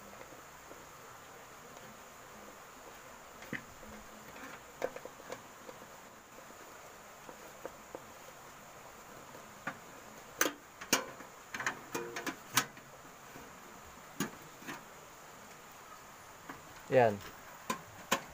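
Scattered sharp clicks and light metallic knocks of screws, tools and hardware being handled against a steel electrical panel box, a few with a brief metallic ring, most of them in the second half. A short vocal sound comes near the end.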